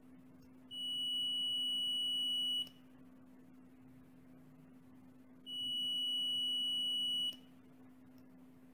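Digital multimeter's continuity buzzer sounding twice, each a steady high beep about two seconds long. Each beep means the rotary switch's contacts have closed between the probes and the meter reads continuity.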